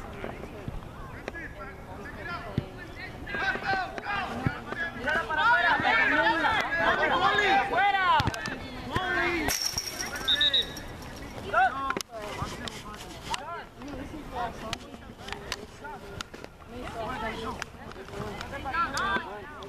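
Several voices shouting at once across the field, densest and loudest in the middle stretch, then scattered single calls toward the end.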